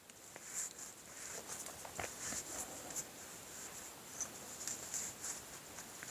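Faint rubbing and scraping of a wooden dowel twisted back and forth inside a small wire-mesh fishing feeder cage, with a few light clicks, smoothing burrs off the inside of the mesh.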